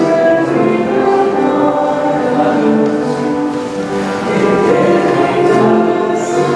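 Choir singing a hymn during Communion, with long held notes.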